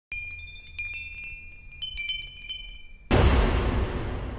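Logo jingle of bright chime notes struck one after another, each ringing on, for about three seconds. Then comes a sudden loud crash of noise that dies away over the next two seconds.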